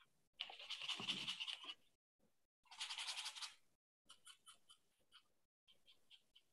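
Paintbrush scrubbing on canvas in two quick bursts of rapid back-and-forth strokes, each about a second long, followed by a few light scratchy dabs.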